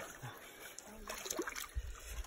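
Faint splashing and trickling of shallow water as a hand works through a wet seine net, with a few soft ticks about halfway through.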